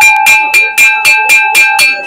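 A white ceramic lid tapped rapidly against the rim of its serving bowl, about four taps a second, each tap leaving a clear bell-like ring. It is the crockery's own ringing sound, offered as a check of the piece.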